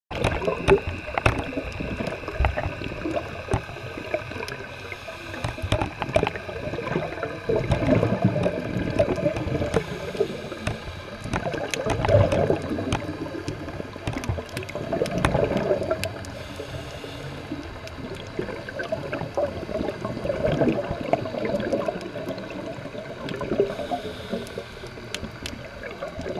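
Underwater sound picked up through a camera housing: muffled water noise with a bubbling, gurgling surge every three to four seconds, and scattered sharp clicks.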